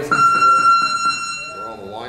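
Electronic boxing-gym round timer buzzer sounding one steady high tone for nearly two seconds. It starts a moment in and cuts off near the end.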